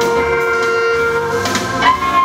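Alto saxophone holding one long note for about a second and a half, then sliding up into a new, higher note near the end.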